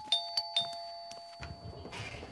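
Doorbell chime ringing out, its two steady tones slowly fading and stopping near the end, with a few light taps over it.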